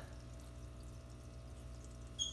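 A faint, steady low hum with several fixed tones, like electrical or mechanical equipment running in the room; nothing else happens.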